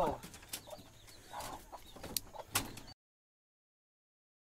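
Chickens clucking softly among a few clicks and knocks, then the sound cuts off to dead silence about three seconds in.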